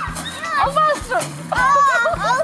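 Young children's excited voices and shouts over background music with a steady bass line.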